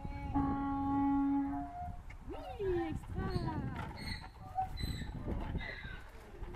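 A donkey braying: a long held note, then a series of falling, breaking calls.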